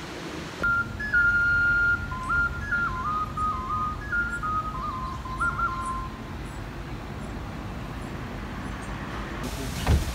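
A high, whistle-like melody of held notes stepping up and down, lasting about five seconds, over a steady low rumble.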